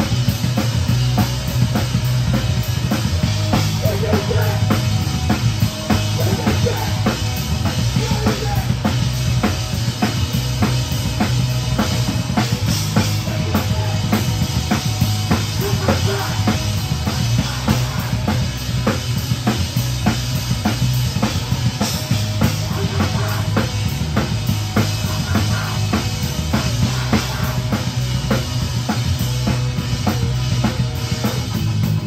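Live rock band playing a song: a drum kit with bass drum and snare keeping a steady beat, under electric guitars and bass guitar. The kit is the loudest thing, heard from right beside it.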